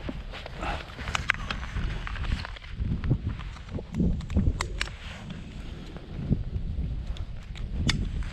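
KTM 500 EXC-F dirt bike rolling slowly over a dirt trail: a low rumble with irregular knocks and crunches from the tyres and chassis. A sharp click near the end as the phone mount on the handlebars is handled.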